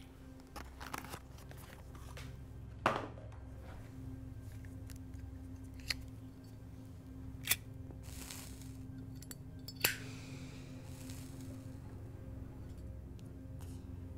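A cigarette lighter struck several times, sharp clicks a second or two apart, with a short hiss after the loudest strike as the flame catches. A low, steady music drone runs underneath.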